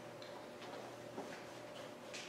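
Faint, light clicks of communion vessels being handled on an altar, a few of them about half a second apart, over a steady low hum.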